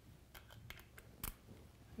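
A handful of faint clicks and taps from an airbrush and its paint bottle being handled while the colour is changed to green. The loudest click comes about a second and a quarter in.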